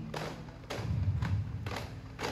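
Daff frame drums struck in a steady beat, about two strokes a second.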